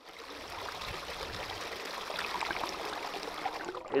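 Rocky stream flowing steadily over stones, fading in over the first half second.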